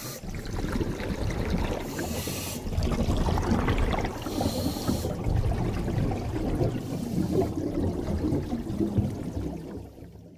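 Water sound effect for an animated outro: bubbling, trickling water with a few brief high hissing swooshes about two, four and a half and seven seconds in, fading out at the end.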